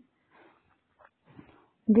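A short pause in a woman's reading aloud: mostly near silence with a few faint, short sounds, then her speech starts again near the end.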